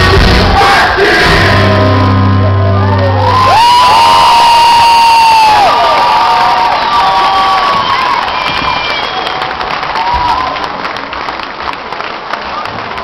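Live rock band's last chord with heavy bass ringing out and stopping about three and a half seconds in, followed by a concert audience cheering and whistling, which gradually dies down.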